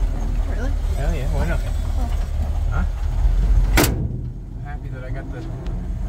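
The 1948 Ford truck's engine running, heard from inside the cab as a steady low rumble, with one sharp loud clunk about four seconds in.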